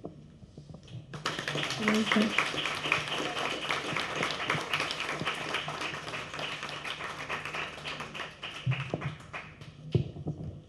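Audience applauding: many hands clapping, beginning about a second in, loudest early, then slowly thinning out and stopping near the end.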